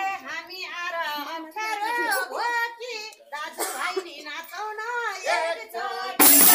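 A woman's high voice singing a Bhailo song line unaccompanied, in several short phrases with wavering, held notes and no drum or tambourine.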